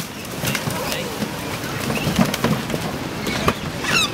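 Mute swans being caught by hand in wooden rowing skiffs: short bird calls among scattered knocks and splashes, with voices in the background.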